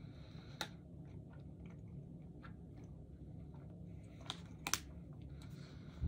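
Faint chewing of a soft candy, with small mouth clicks and a few sharper clicks, one about half a second in and two just past the middle.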